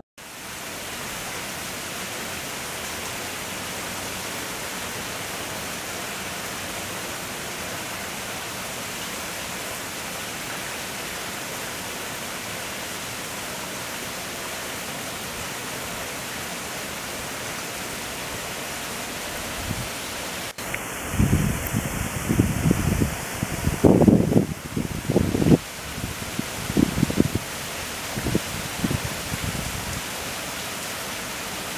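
A steady, even rushing noise. From about two-thirds of the way through, a run of irregular low rumbles and bumps comes over it.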